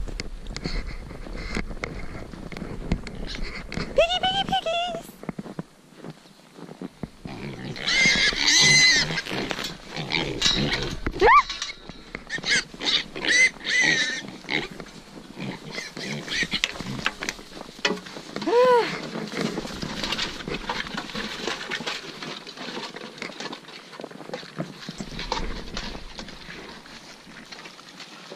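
Young pigs squealing, with several separate high-pitched calls that rise and fall, the loudest about eight or nine seconds in, among irregular rustling and clicking.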